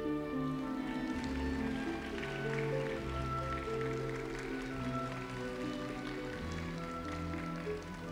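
Orchestra playing slow, soft music, with strings holding long sustained notes.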